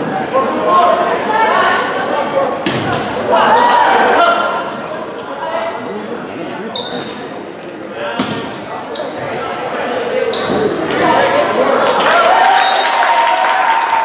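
Volleyball rally in a large gym: sharp smacks of the ball being hit, short high squeaks of sneakers on the court floor, and players and spectators shouting, which swells into cheering over the last few seconds.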